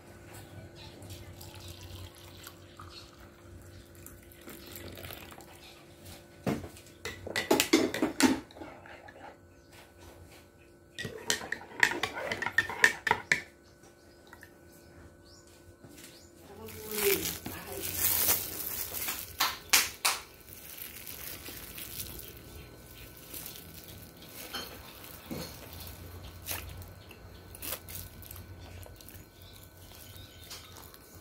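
Water poured into a ceramic mug, with a metal spoon clinking against the mug, in several separate bursts with quieter stretches between.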